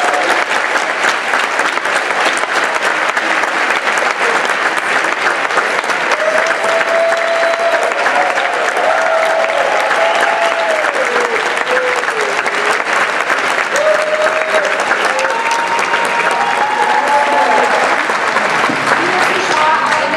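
Studio audience applauding steadily and continuously. About six seconds in, a simple melody joins over the clapping.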